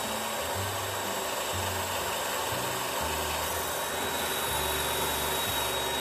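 Gemini Revolution XT tile saw running steadily with a thin high whine as its blade cuts through porcelain tile, the tile fed slowly on the slide tray to finish the cut without chipping.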